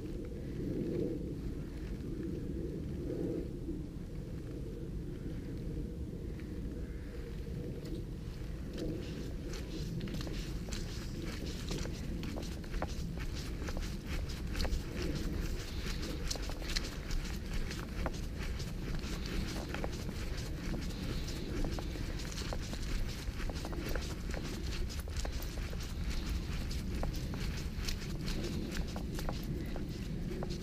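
Footsteps walking along a dirt path scattered with dry leaves, with short crunches and scuffs that become more frequent about ten seconds in, over a steady low rumble.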